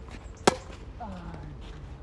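Tennis racket striking the ball on a forehand, a single sharp pop about half a second in. About a second in it is followed by a short vocal sound from a man's voice that falls in pitch.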